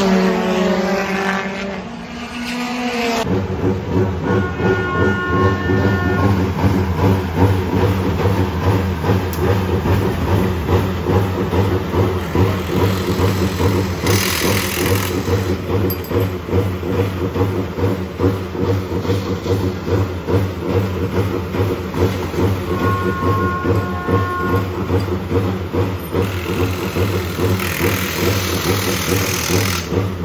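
A BMW BTCC touring car passes at speed, its engine note falling in pitch as it goes by. From about three seconds in, a steady engine idle runs on, with two short bursts of hiss around halfway and near the end.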